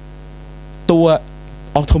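Steady electrical hum of a lecture-room sound system, heard through a pause in a man's speech into a handheld microphone, with a brief low pop near the end.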